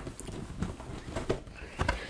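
A cardboard model-kit box being opened: the lid slid off with light scraping of cardboard and a few short knocks, the loudest pair near the end.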